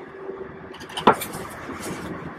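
Mostly quiet room tone with one brief short sound about a second in, then faint rustling near the end as a paintbrush is wiped on a paper towel.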